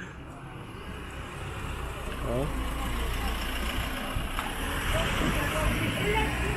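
An SUV driving slowly past on a town street, its engine and tyre noise swelling steadily as it comes near.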